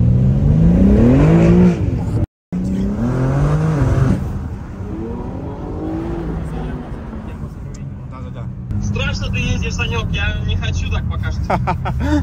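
BMW M3 engine heard from inside the cabin, accelerating hard twice with its pitch climbing, broken by a brief dropout about two seconds in. It then settles into quieter steady running.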